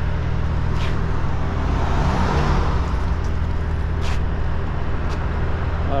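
Street traffic: a car passes by, swelling and fading about two seconds in, over a steady low rumble of traffic.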